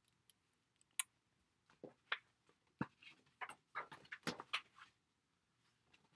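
Light, scattered taps and clicks of small craft tools and paper being handled on a desk and stamping mat, about fifteen in all, in quick irregular succession.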